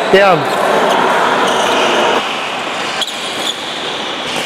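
A short shouted call, then badminton rally sounds in a large hall, ending in two sharp racket strikes on the shuttlecock about half a second apart, some three seconds in.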